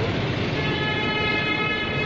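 Steady street traffic noise, with a vehicle horn sounding one held note for about a second and a half, starting about half a second in.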